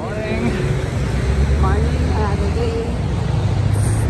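Steady low rumble of road traffic on a busy street, with faint indistinct voices now and then.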